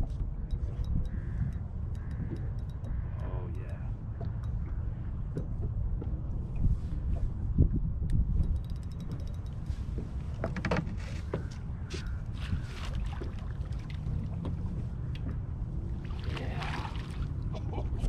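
Steady low rumble of wind on the microphone and water against a bass boat's hull, with scattered light clicks and knocks, while a hooked fish is played and netted. There is a louder burst of noise near the end.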